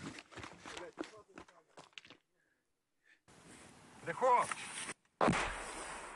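Mortar round exploding nearby: a sudden loud blast about five seconds in, its rumble dying away over the next two seconds. Before it come clattering handling noise and muffled voices on the phone's microphone, a short gap, and a brief shout.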